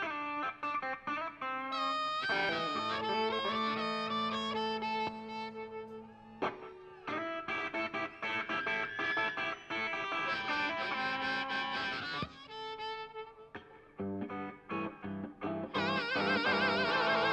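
Live blues-rock band playing an instrumental passage: a harmonica played into the vocal microphone, with sustained, wavering notes over electric guitar. The playing breaks off briefly about six seconds in and thins to sparse, quieter notes near the end.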